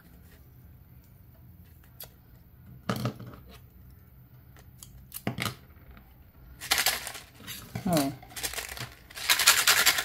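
Homemade maracá rattle, a clear plastic bottle with dried seeds inside, shaken in several short bursts during the last few seconds, the seeds rattling against the plastic. Before that there are only a few faint clicks as the tape is handled.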